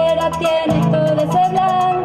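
A live pop band playing: electric guitar and bass over a drum kit, with a steady fast hi-hat about eight beats a second and a sustained melody line.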